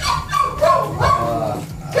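A dog off camera whining, a run of short high-pitched cries that bend in pitch.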